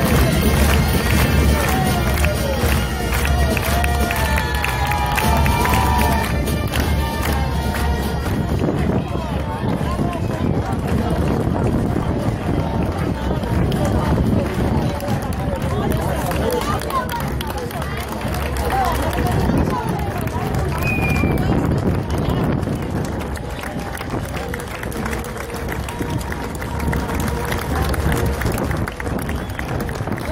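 A bagpipe band with drums playing steadily, which stops about eight seconds in; after that, the chatter of a crowd of spectators, with some distant music.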